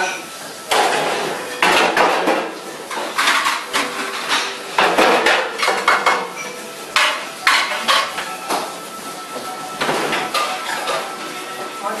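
Stainless-steel pans and trays clattering against each other and against metal surfaces as they are handled, in irregular bursts of clanking every second or two.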